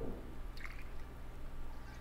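Vodka poured from a bottle into a small metal jigger, faint and brief at the start, followed by a few light drips and small clicks as the bottle is tipped upright.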